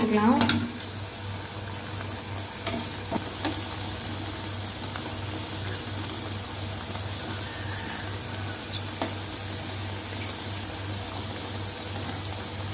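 Badusha (maida dough rounds) deep-frying in oil in a steel pan on a low flame, with a steady sizzle. A metal spoon turning them gives a few light clicks against the pan.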